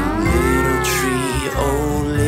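A cartoon sound effect: a pitched glide that rises and then falls over about a second and a half, laid over a children's song backing track.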